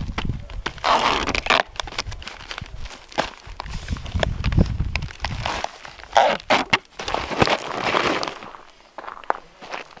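Duct tape being pulled off the roll in several long rips and pressed onto a cardboard box.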